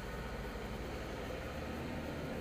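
Steady engine and road noise inside a moving car's cabin, a low rumble under an even hiss.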